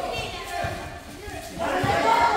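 Voices of players in a pickup football game calling out, with a couple of dull low thuds.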